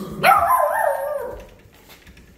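A puppy gives one high-pitched bark about a second long, wavering in pitch before it fades.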